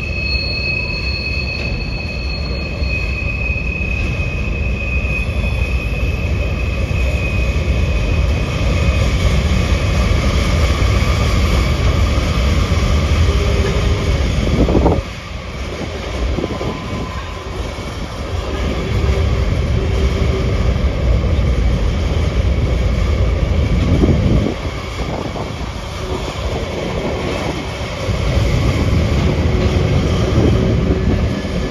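Freight train cars rolling across an elevated railway bridge: a steady low rumble of wheels on rail, with a thin high-pitched wheel squeal over the first several seconds that fades away. The rumble dips in loudness about halfway through and again near the end.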